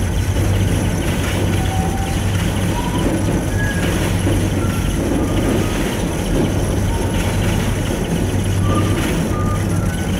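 Steady running noise inside a descending gondola cabin: a low hum with rushing noise as the cabin travels along the cable, and brief faint whistles at varying pitches now and then.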